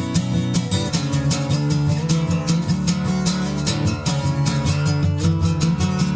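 Martin DM acoustic guitar strummed in a fast, even rhythm, changing chord about a second in.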